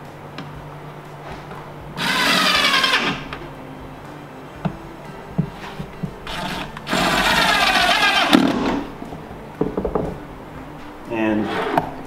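A cordless power driver runs twice, about a second each, driving screws through a metal ball-bearing drawer slide into a plywood cabinet side, with a few sharp clicks of the metal slide being handled in between.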